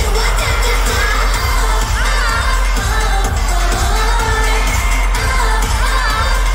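K-pop dance track played loud over arena speakers: sung vocals over a steady, heavy bass beat.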